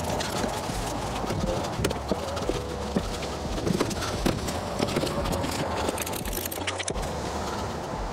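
Many small irregular ticks and taps of raindrops hitting the camera, over a steady low wind rumble. The sound drops out briefly about seven seconds in.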